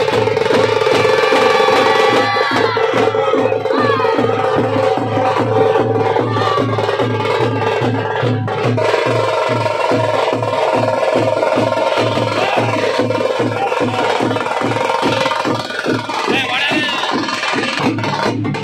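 Veeragase folk-dance drum ensemble playing a fast, steady beat under a held drone, with a few voices rising over it.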